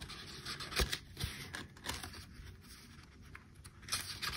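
Sheets of printed paper being slid and shuffled on a table by hand: soft paper rustling and scraping, with a few light knocks.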